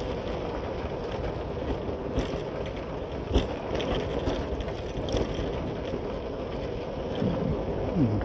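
Motorcycle running at low speed over a rough dirt road: a steady engine and road noise with rattles and knocks from the bumps, the sharpest knock a little before halfway.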